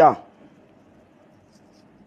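A voice trails off in the first moment, then only faint steady hiss of room tone remains.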